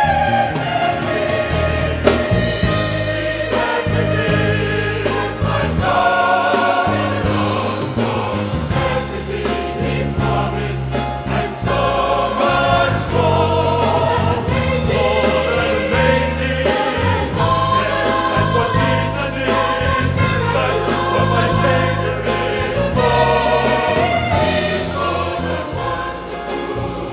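A choir singing a gospel song in sustained harmony, accompanied by piano.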